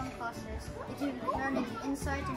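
Children's voices chattering and overlapping in a classroom, with background music underneath.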